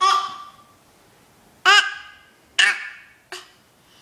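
A baby's toy honking in short, pitched honks, four times: three full honks about a second apart and a clipped fourth near the end.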